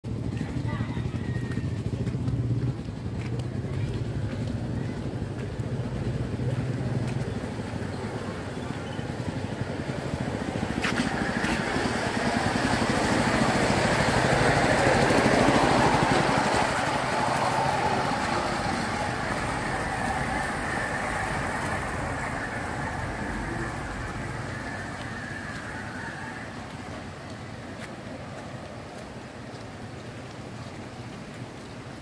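A rail trolley (a 'skate') rolling past on the railway track, its wheels running on the rails with a rumble and a faint high ringing note. The sound builds to its loudest about halfway through as the trolley passes close, then fades away.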